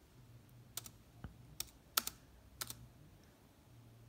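About five sharp clicks of laptop keys spread over a couple of seconds, pressed to advance the PowerPoint slides.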